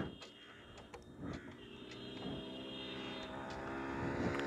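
A motorcycle engine approaching along the road, its sound growing steadily louder.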